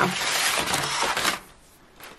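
Embossed kraft packing paper rustling and crinkling as it is pulled open by hand, a dense crackle that stops abruptly about a second and a half in.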